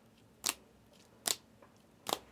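Clear hard plastic card holders clacking against each other as a stack of encased trading cards is flipped through one card at a time: two sharp clacks, a little under a second apart.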